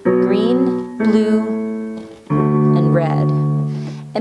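Digital keyboard in a piano voice playing three chords about a second apart, following the song's bass line. Each chord is struck sharply, then rings and fades.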